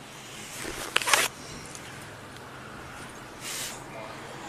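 Clothing and a hand brushing against a body-worn camera's microphone: a sharp click and a short scraping rustle about a second in, and a softer rustle near the end, over a faint outdoor background.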